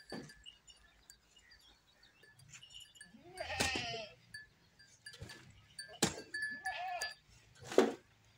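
A goat bleats twice: a long quavering bleat about three and a half seconds in and a shorter one near seven seconds. A shovel scrapes and knocks as soil is loaded into a metal wheelbarrow, with sharp knocks near the start, at about six seconds and near the end.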